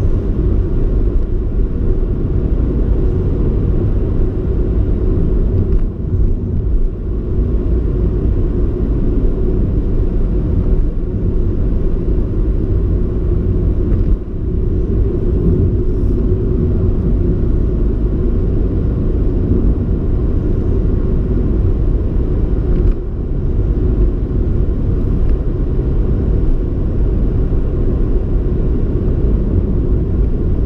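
Car being driven on a country road, heard from inside the cabin: a steady low rumble of engine and tyres, with a few brief dips in level.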